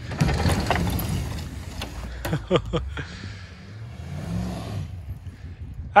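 Pickup truck engines working under load, towing a heavy box van on a tow rope through snow and mud, with a rough rumble and a brief rev that rises and falls about four seconds in.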